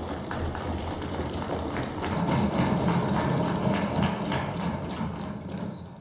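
Assembly members applauding the oath with a dense, irregular patter of clapping and desk-thumping. It swells about two seconds in and fades near the end.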